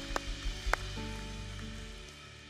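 Congregation applauding with a few sharper nearby claps, the applause fading out, over sustained keyboard chords from the worship band.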